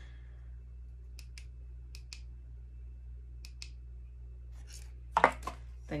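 Small clicks from handling a flashlight and its box, several faint ones mostly in pairs, then a louder clatter about five seconds in, over a steady low hum.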